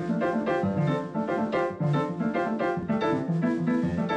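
Jazz played on a stage keyboard with a piano sound: a quick, busy run of chords and single notes.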